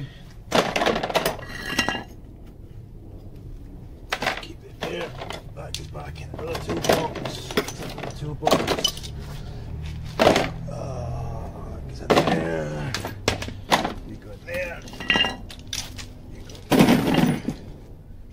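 Metal hand tools clattering and clinking as they are put away into a toolbox, an irregular run of sharp knocks, some left ringing.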